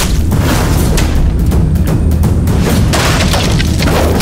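Dramatic action-trailer background score with heavy booming hits and sharp impact effects, the strongest burst a little before the end.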